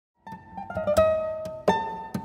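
Classical guitars playing, starting about a quarter second in: ringing plucked notes with sharp accented chords about a second in and again near the end.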